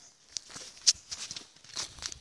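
Handling noise from a handheld camera being turned around: scattered rustles and small clicks, with one sharp click about a second in.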